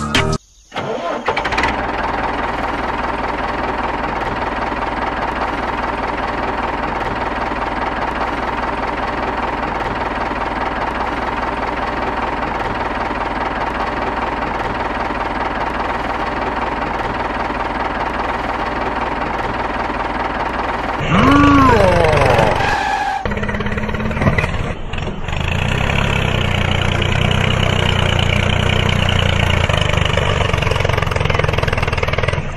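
A tractor engine running steadily. About two-thirds of the way in there is a louder stretch whose pitch swoops up and down, after which a deeper, rougher engine note continues.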